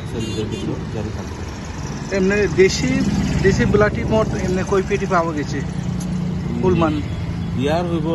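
Speech in short phrases inside a stationary car's cabin, over the steady low hum of the car's engine idling.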